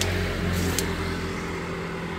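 A car engine idling steadily, at an even low pitch, slowly growing fainter over the two seconds.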